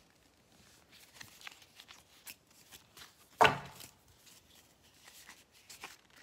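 A deck of large paper cards being leafed through by hand, with faint flicks and rustles of card against card, and one sharper knock about halfway through.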